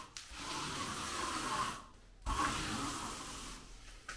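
A trowel drawn in two long strokes, each about a second and a half, over render reinforcing mesh, pressing it into wet base coat render.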